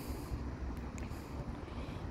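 Quiet outdoor background: a steady low rumble and hiss, with a single faint click about a second in.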